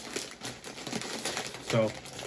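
Crinkly snack chip bag being pulled open: a quick run of irregular crackles and rustles as the plastic film is handled and torn, stopping just before the end.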